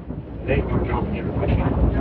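A candlepin bowling ball rolling down a wooden lane, a low steady rumble that builds about half a second in, under faint background chatter.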